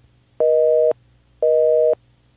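Telephone busy signal: a steady two-tone beep, half a second on and half a second off, sounding twice.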